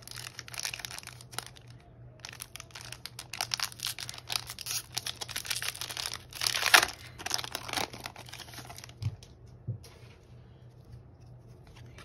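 Foil wrapper of a Pokémon trading card booster pack crinkling and tearing as it is opened by hand. It is a run of crackly rustles, loudest about two-thirds of the way through, and much quieter after about nine seconds.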